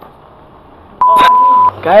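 Edited-in censor bleep: a single steady high beep about a second in, lasting under a second, with a sharp click near its start.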